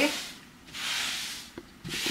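Wide deck stain brush strokes rubbing watery limewash paint across a wall: two brushing strokes, the first about a second long, the second starting near the end.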